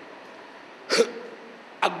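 A man's single short, sharp breath or vocal catch close to the microphone about a second in, over a low steady hiss; his speech resumes near the end.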